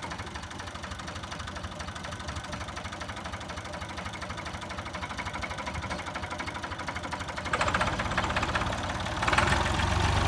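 Volvo BM 400 Buster tractor engine idling steadily with an even pulsing beat. It gets louder about two-thirds of the way in and again near the end.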